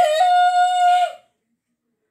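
A woman's voice in one high, drawn-out cry that swoops up and then holds a steady pitch for about a second. The sound then cuts out completely, as in a stream audio dropout.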